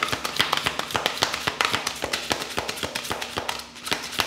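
A deck of tarot cards being shuffled by hand: rapid, irregular taps and flicks of the cards against one another, thinning out a little near the end.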